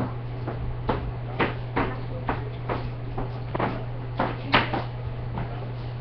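A series of about a dozen irregular sharp clicks or taps, loudest about four and a half seconds in, over a steady low hum.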